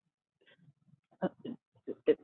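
A person's short, quiet vocal sounds: a few brief voice fragments about a second in and again near the end, after half a second of near silence.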